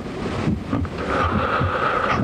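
Electronic dance music from a DJ set playing over a club system: a steady kick drum at about two beats a second under a held synth tone, with a hissing wash of noise over it.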